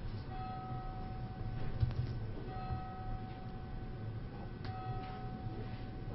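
Quiet room with a low hum and faint scattered clicks of computer keys being typed. A steady high tone comes and goes in stretches of about two seconds.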